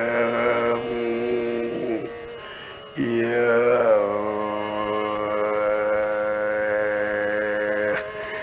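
Carnatic classical music in a slow, unmetred passage with no drum: long, steady low notes, each reached by a sliding descent, with a brief softer dip partway through before the next held note.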